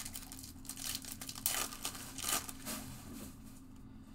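Foil wrapper of a Topps Chrome baseball card pack crinkling as it is handled, in several short rustles.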